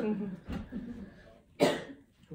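A person coughing once, a short sharp cough about one and a half seconds in, after some low talk.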